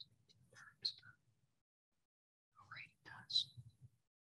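Faint whispered speech in two short stretches, with sharp s-sounds.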